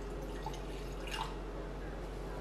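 Red wine poured from a glass bottle into a glass, a soft trickle with one brief louder splash just past a second in.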